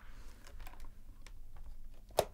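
A few faint, irregular clicks over a low, steady hum.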